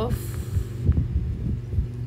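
Steady low hum under a few soft, low thumps from a stylus writing on a tablet screen, with a brief hiss at the start.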